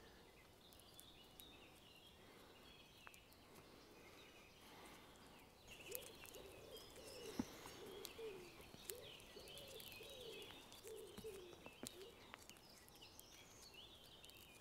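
Near silence. Birds sing faintly in the background, and a few faint, scattered clicks come from the green twig's fibres cracking as it is twisted.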